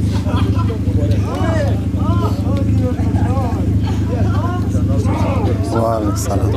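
The engine of the Afghan-built supercar prototype, a Toyota-sourced engine, running steadily with an even low rumble, while several people talk around the car.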